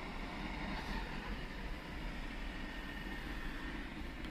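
A 2022 Camaro SS's 6.2-litre LT1 V8 idling, heard from inside the cabin as a low, steady hum.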